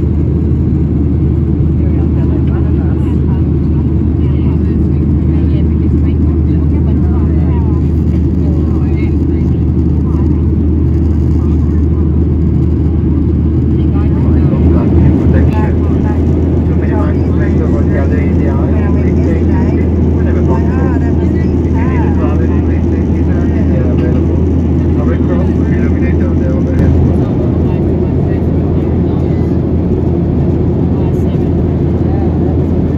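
Steady low drone of a jet airliner's engines and rushing air heard from inside the passenger cabin during the climb after takeoff, with a brief swell about halfway. Faint passenger voices murmur in the background.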